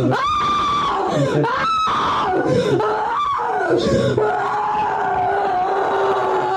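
A young woman screaming and wailing during an exorcism, in a replayed recording: long held cries that slide up and down in pitch, one after another without a break.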